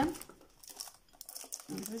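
Plastic packaging crinkling faintly in short scattered crackles as a boxed, plastic-wrapped perfume is pulled out of a cardboard shipping box.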